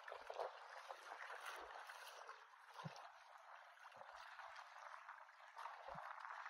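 Faint wash of small waves lapping at the shore, a soft steady sound with a few faint bumps.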